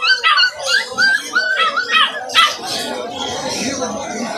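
A puppy whining in a quick series of short, high-pitched yelps during the first half, over the murmur of people talking.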